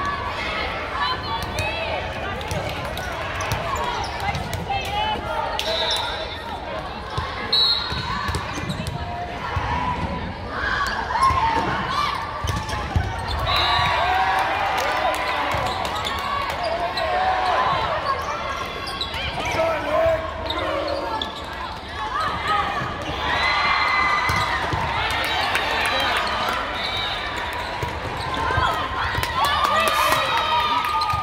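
Indoor volleyball play in a large, echoing hall: the ball being struck by hands and thudding on the court, repeatedly, amid players' calls and the chatter of many voices.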